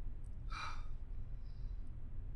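A woman's short, breathy sigh about half a second in, over a low steady room hum, with a few faint laptop keyboard clicks.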